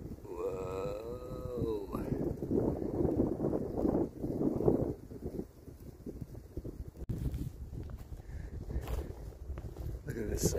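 A man's voice in one drawn-out, wavering exclamation lasting under two seconds, followed by a few seconds of rustling noise that fades to a quieter stretch with a few faint clicks.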